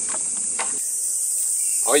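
Cicadas in a loud, steady, high-pitched summer chorus.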